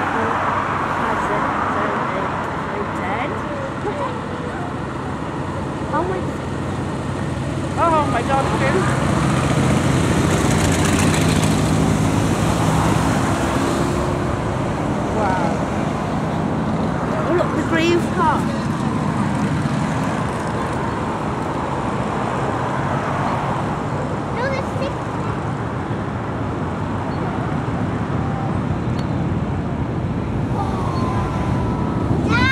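Motorcycles and cars of a slow column passing on the road below, a continuous traffic sound with a steady engine drone that is loudest about eight to fourteen seconds in.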